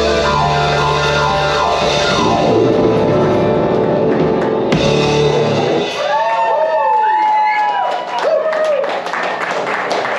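Live rock band playing full out with drums, bass and guitars. About halfway through, the drums and bass drop out, leaving sliding, wavering high tones as the song winds down.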